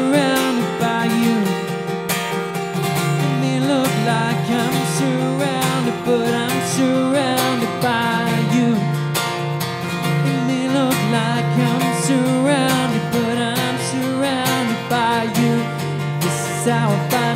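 A man singing a worship song to his own strummed acoustic guitar, the melody running in short repeated phrases.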